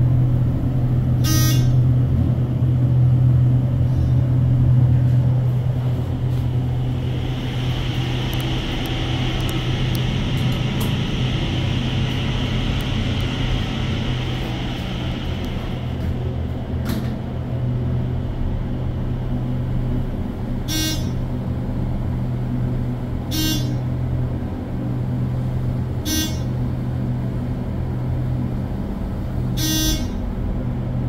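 ThyssenKrupp hydraulic elevator in operation, heard from inside the car: a steady low hum throughout, with a hiss lasting several seconds in the middle. Short sharp sounds come about a second in and then several times near the end, a couple of seconds apart.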